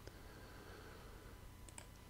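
Near silence with faint computer mouse clicks: one right at the start and two close together near the end.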